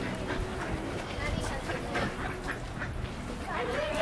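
A young child's wordless voice sounds, faint and brief, over a steady low rumble.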